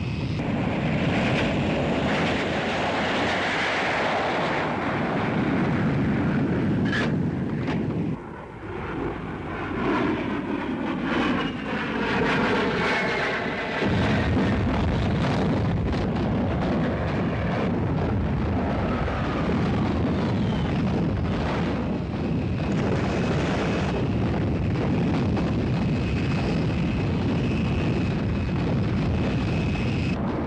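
Jet engine noise of Hawker Sea Hawk fighters attacking, with one passing by in a falling whine about ten seconds in. From about halfway on, a ship's twin anti-aircraft gun fires repeatedly under the continuing jet noise.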